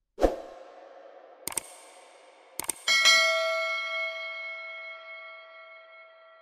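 Outro sound effects: a sharp hit with a short ring, a few quick clicks, then a bell-like chime that rings on and slowly fades.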